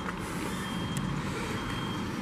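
City street traffic noise, a steady hum with a thin, continuous high-pitched tone running through it.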